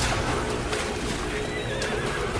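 Film background score with a horse neighing over the music, a wavering cry in the last half-second.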